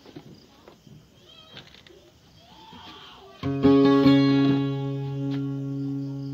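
Faint knocks and handling noise, then about three and a half seconds in a guitar chord is struck loudly and left to ring, fading slowly.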